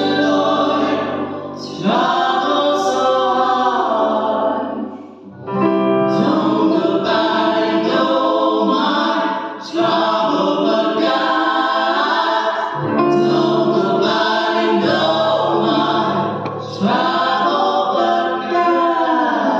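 A gospel vocal trio of two women and a man singing in harmony through microphones. The phrases are sustained, with short breaks between them about every three to five seconds.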